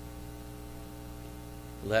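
Steady electrical mains hum, a constant low drone with a few fixed tones, heard in a pause in the speech.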